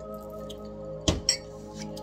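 Soft background music with steady held tones, and two sharp clicks close together about a second in as tarot cards are handled on the table, followed by a few fainter ticks.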